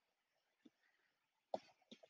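Near silence: room tone, with one brief faint throat sound about one and a half seconds in.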